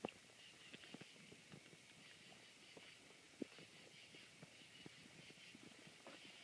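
Near silence, with faint scattered clicks and one sharper tick about three and a half seconds in.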